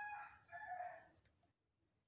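A faint, high-pitched bird call in two drawn-out parts, ending about a second in.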